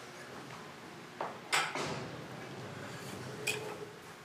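Glass decanter and tumbler being handled: a few knocks and clinks, the loudest about a second and a half in, and a short ringing glass clink near the end.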